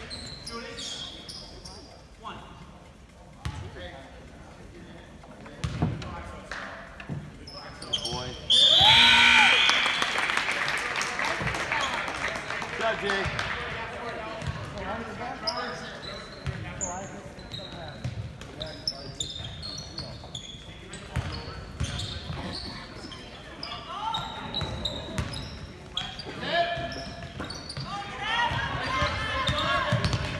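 Basketball bounced on a hardwood gym floor, heard as scattered thuds, with spectators chattering in a large, echoing gymnasium. About eight and a half seconds in comes a sudden loud shout from nearby spectators, the loudest moment, and crowd noise tails off over the next few seconds.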